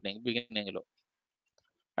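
A voice speaking for under a second, then a pause with a few faint clicks.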